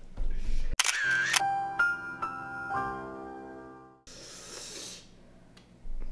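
A short edited-in musical sting: a quick swoosh about a second in, then a few held notes stepping downward that fade out, followed by a brief burst of hiss near four seconds.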